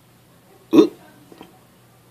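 A man's short vocal grunt, a hiccup-like 'uh', once, about three quarters of a second in. A faint click follows about half a second later.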